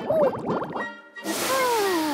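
Cartoon sound effect of rain being let go from a cloud: a burst of hiss with a long, smooth whistle-like tone falling in pitch, starting a little past the middle. Before it come short rising-and-falling vocal sounds like a sigh.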